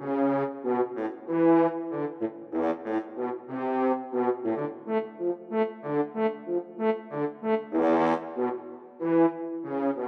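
Sampled French horns from Miroslav Philharmonik 2's portato horn patch playing auditioned staccato patterns: a run of short, detached brass notes and chords in a steady rhythm, with a brighter, louder chord about eight seconds in.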